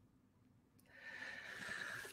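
Near silence, then a woman's soft breath, likely an inhale through the nose, from about a second in, growing slowly louder.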